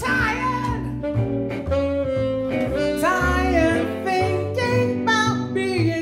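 Live jazz: a woman's voice singing and a saxophone playing together over a double bass that moves through low notes.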